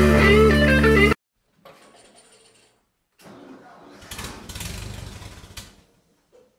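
Blues-rock track with electric guitar that cuts off abruptly about a second in. After a short silence come faint scattered sounds, then a low rumble that builds and fades away just before the end.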